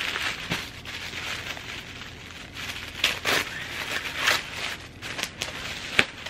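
Tissue paper crinkling and rustling as a wrapped package is pulled open by hand, with sharper crackles about three and four seconds in.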